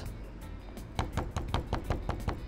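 Light knocks and clicks from bait and tools being handled on a plastic cutting board, about five in the second half, over quiet background music.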